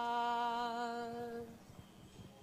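A single unaccompanied voice holding the last note of a liturgical chant: one steady sung tone that fades out about a second and a half in.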